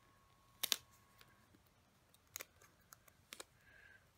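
A few light clicks and taps of hands handling paper stickers on a planner page: a sharp double click about two-thirds of a second in, then scattered fainter ticks.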